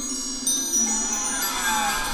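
Relaxation music with wind chimes ringing in many high, overlapping sustained tones over a steady low drone. A slow downward pitch glide comes in near the end.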